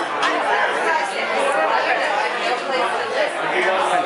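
Many people talking over one another at once: a hubbub of overlapping conversation.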